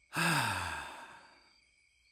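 A man's long sigh that falls in pitch and fades away over about a second and a half. It is heard against a steady high chirring of crickets.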